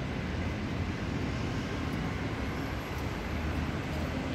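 Steady city road traffic: a continuous low rumble of passing vehicles with no distinct single event.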